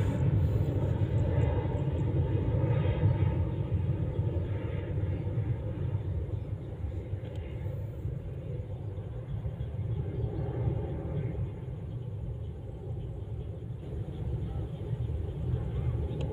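A low, steady rumble that slowly fades over the stretch.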